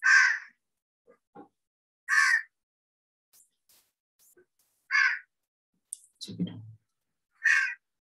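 A crow cawing four times, one short harsh caw about every two and a half seconds. Faint mouse clicks between the caws.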